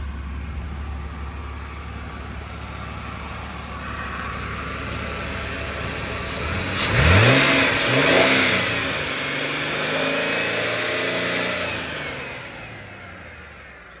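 2004 Ford Taurus 3.0-litre V6 idling, revved twice in quick succession about seven seconds in, then holding a slightly raised speed before settling and fading near the end.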